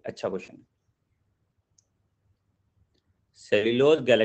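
A man's voice speaking briefly, then about three seconds of near silence with one faint tick, then the voice starts again.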